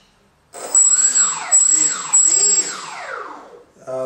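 Brushless outrunner electric motor (Turnigy 2826/6, 2200 kV) turning a 6-inch propeller on a foam RC plane, revved up and down several times in quick throttle blips, its pitch rising and falling with each one. A thin high whine sits over the first couple of seconds of running. The motor starts about half a second in, after a brief silence.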